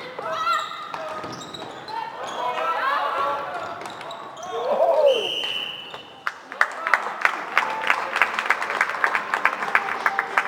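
Floorball match in an echoing sports hall: players shouting for the first few seconds, then a short referee's whistle blast about five seconds in. After that comes a fast run of sharp claps, several a second.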